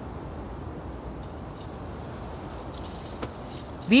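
Faint light jingling, from about a second in until near the end, over a steady background hiss.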